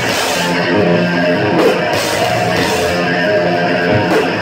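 Live heavy metal band playing loud: electric guitar over drums.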